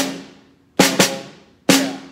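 Snare drum struck with wooden sticks, played slowly as the separated parts of a five-stroke roll: a stroke right at the start ends the right-hand double bounce, a quick double bounce (two strokes) comes a little under a second in, and a single tap near the end completes the roll. Each stroke rings out and fades.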